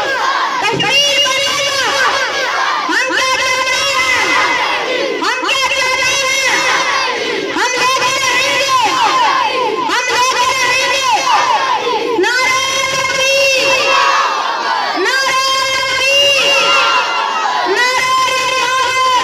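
A schoolboy shouting forcefully into a microphone, amplified over a loudspeaker, in loud phrases of about two seconds each with brief breaks between; children's voices shouting too.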